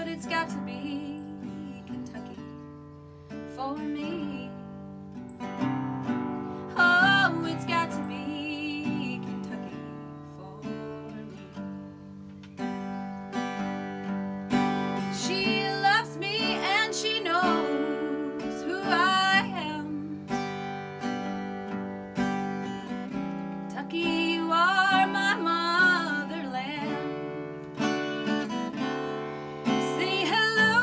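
A woman singing a slow country song with a wavering, held voice while strumming and picking a small-bodied acoustic guitar. Her phrases come in lines with short guitar-only gaps between them.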